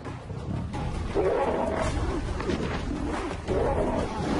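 Male lions growling as they fight, rough growls from about a second in.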